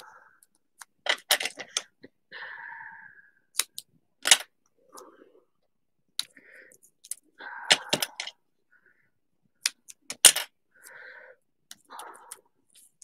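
Scissors and craft pieces handled on a cutting mat: a scattering of sharp clicks and taps, several in quick clusters, with brief muffled sounds between them.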